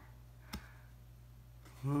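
A single sharp click from tarot cards being handled, about half a second in, over quiet room tone.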